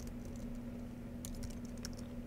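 Computer keyboard being typed on: a quick run of key clicks in the second half, over a steady low hum.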